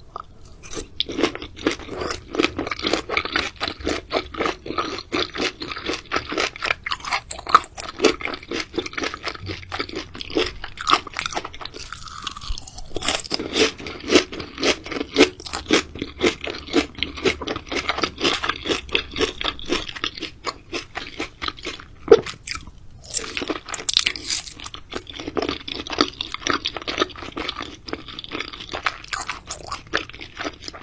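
Close-miked chewing of raw seafood: a fast, wet run of crunchy clicks and crackles, broken by two short pauses, about twelve seconds in and again about twenty-two seconds in.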